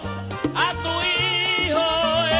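Live salsa band playing, with upright bass notes pulsing underneath; about halfway through, a singer holds a long note with vibrato over the band.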